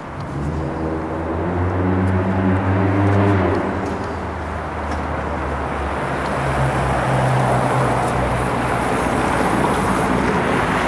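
City street traffic: a motor vehicle's engine hum swells, is loudest about three seconds in and then fades, over a steady wash of road noise. A second engine hum passes about six to eight seconds in.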